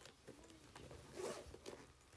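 Faint rustling and handling noises close to the microphone, a few short scrapes and clicks, the loudest a brief rustle about halfway through.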